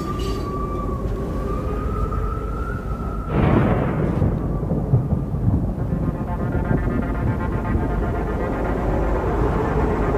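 Steam train sound effect: a long, steady whistle for about three seconds, then a sudden rush into a low, continuous rumble.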